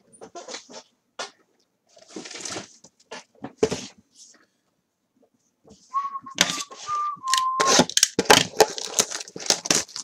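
Cardboard trading-card boxes and packs being handled on a table: scattered clicks, taps and a short rustle. About six seconds in, a person whistles a few short notes at nearly one pitch, over a quick run of clicks and knocks as the next hobby box is set down and moved.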